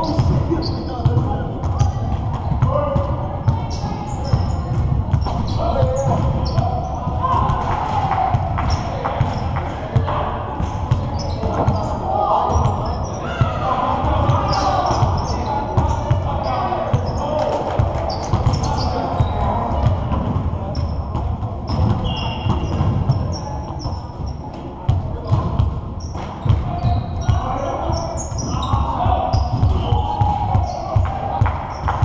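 Basketballs bouncing and thudding on a hardwood gym floor during a pickup game, with players' voices calling out indistinctly, all echoing in a large gym.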